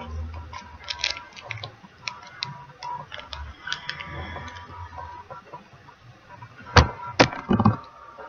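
Candy wrapper crinkling and being handled, with small crackles throughout, then torn open with two sharp rips close together near the end and a short crinkle after.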